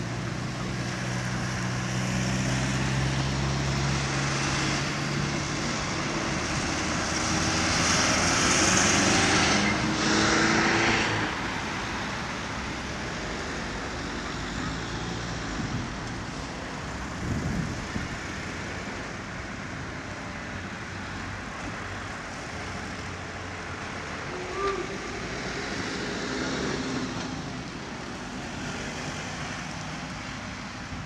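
Distant BK 117 rescue helicopter approaching, a faint steady engine drone mixed with road traffic; a vehicle passes, loudest about ten seconds in.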